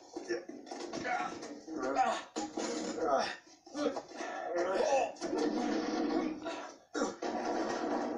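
A voice with music behind it.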